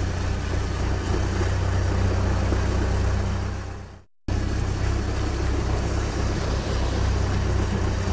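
A vehicle engine sound effect running steadily at idle, fading out about four seconds in. After a brief dead silence, a similar engine sound cuts in abruptly and runs on.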